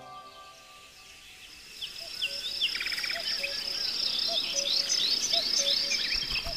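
Background music fades out, and forest ambience rises: birds calling with repeated quick rising chirps, a brief rapid trill and a short low note about once a second, over a steady high insect drone.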